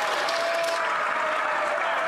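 Members of Parliament applauding in the chamber: a steady wash of hand clapping from many people.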